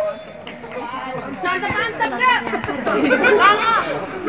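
Chatter of several voices talking and calling out at once, overlapping, growing louder from about a second in.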